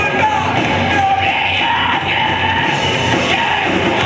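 Metalcore band playing live: electric guitar and drum kit going full tilt while the vocalist screams into the microphone.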